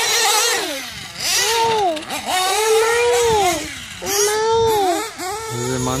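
Reds R5T nitro engine in a 1/8-scale Losi 8ight-T 3.0 truggy, revving up and dropping off about five times as the throttle is opened and closed around the track. The engine is tuned on the rich side but pulls smoothly.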